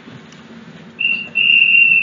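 A high-pitched steady whistle-like tone at one pitch, first a short blip about a second in, then a longer note near the end.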